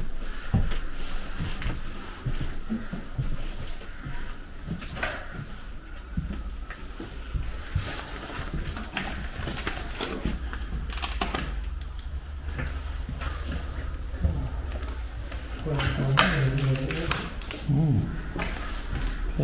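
Footsteps with scattered knocks and scuffs on bare, debris-strewn floorboards, over a low handling rumble. A voice is heard briefly near the end.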